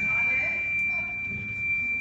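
A steady high-pitched tone held at one pitch without wavering, over a faint low room murmur.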